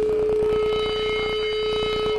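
Amplified electric guitar feedback at a loud grindcore show: a steady, sustained whine, with higher squealing feedback tones joining just before a second in and cutting off near the end, over rapid drum hits.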